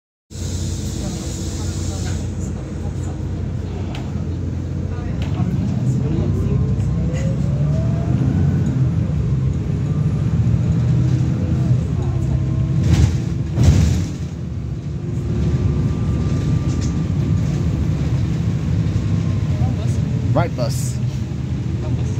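Interior of a single-decker bus on the move: the engine and drivetrain run with a steady low rumble, a whine rises in pitch about seven seconds in as the bus gathers speed, and a couple of sharp knocks sound about two-thirds of the way through.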